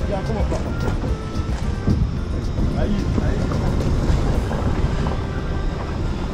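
Car driving slowly along a rough dirt track, heard from inside: a steady low rumble with irregular knocks and rattles.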